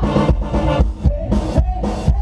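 Live funk band playing through a PA: a steady drum-kit beat with bass and guitar, and a singer's voice over it.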